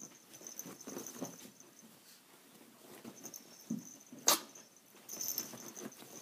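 A small dog and a ferret play-wrestling on soft bedding: short low animal sounds and scuffling, with one sharp click about four seconds in.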